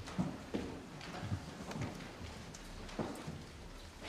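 Scattered knocks and thumps at irregular intervals, about five or six of them, over a low steady hum.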